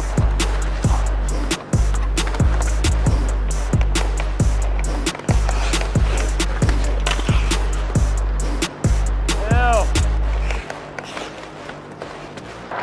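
Background music with a deep, sustained bass line and a steady beat, which stops about ten and a half seconds in.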